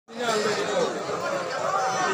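Several people talking at once in a seated crowd: overlapping voices of general chatter.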